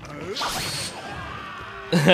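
Anime episode audio played back at a low level: a whoosh-and-crash fight sound effect about half a second in, mixed with music and a voice.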